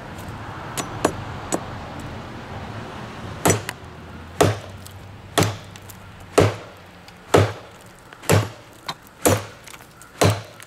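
Thick-stock Schrade Bolo machete chopping into a standing tree trunk: a few light taps, then from about three and a half seconds in, hard blade strikes into the wood about once a second.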